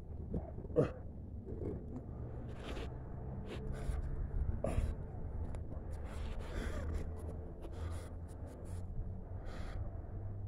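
A man breathing hard with effort, short gasping breaths every second or so, as he strains to push a heavy granite headstone, over a low steady rumble.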